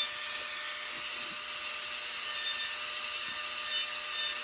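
Small rotary carving tool with a diamond bit grinding wood in a steady, even hiss with a faint motor whine, taking only a little material off the carving.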